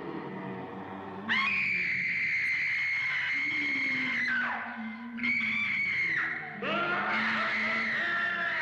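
A woman screaming: a long high scream starts just over a second in and falls away after about three seconds, then comes a shorter one, then a third. A low held moaning tone runs beneath them.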